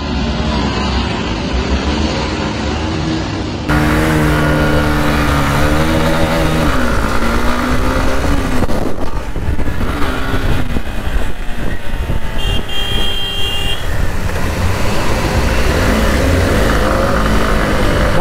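Hero Xtreme 160R motorcycle engines running and revving, their pitch rising and falling, with wind rumbling on a helmet-mounted camera. There is an abrupt cut to a different shot about four seconds in.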